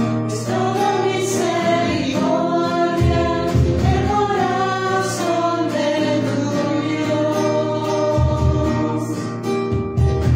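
Choir singing a devotional hymn in long held notes over instrumental accompaniment with a steady bass.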